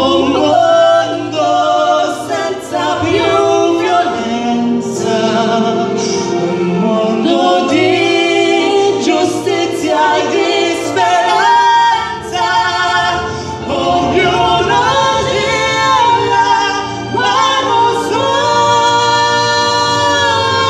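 A female and a male voice singing a duet together into handheld microphones, with sustained, gliding sung notes over instrumental accompaniment.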